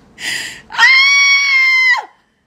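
A woman's loud, high-pitched squeal held at a steady pitch for about a second, after a short breathy burst, cutting off abruptly.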